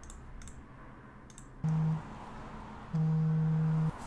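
Three computer mouse clicks, then a low electronic telephone tone sounds twice, first briefly and then for about a second.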